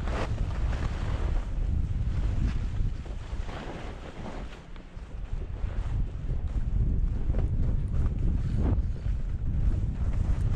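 Wind buffeting a camera microphone while skiing downhill: a steady low rumble. Several short scrapes of ski edges on snow cut through it as the skier turns. The wind eases briefly about halfway through.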